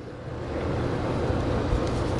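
Steady low rumble with a hiss over it: outdoor background noise with no clear single source.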